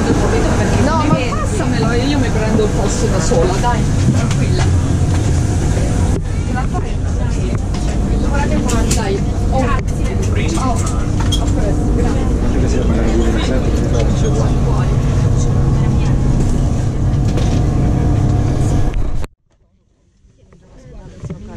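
Passengers talking and moving about inside a crowded high-speed train coach standing at a platform, over a steady low hum. The sound cuts off abruptly about a second before the end.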